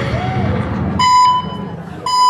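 Electronic buzzer-like beeps used as a sound effect in a dance mix. Two half-second beeps about a second apart, the second starting near the end, come in as a bass-heavy music track cuts out.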